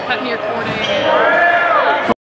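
Basketball game sound in a gym: voices of spectators and players, with a basketball bouncing on the hardwood court.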